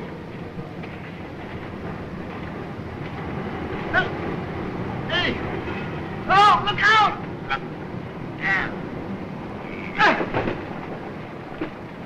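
Several short, high-pitched vocal cries that rise and fall in pitch, over a steady rumbling background noise. The two loudest cries come close together about six and a half and seven seconds in.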